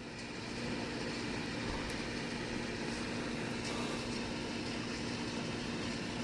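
A steady mechanical hum, one constant low tone over a noise bed, with no clear knocks or clicks.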